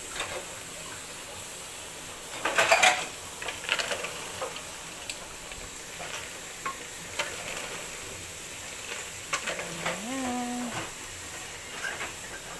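A metal ladle stirs apple snails in a pot of simmering coconut milk: a steady bubbling hiss, with clinks and scrapes of the ladle and shells against the pot. The clatter is loudest a couple of seconds in, then comes as scattered single clicks.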